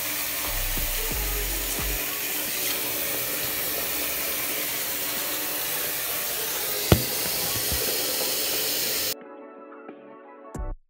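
Bathroom tap running steadily into a sink during toothbrushing, cutting off suddenly near the end, with one sharp click partway through. Music plays faintly underneath.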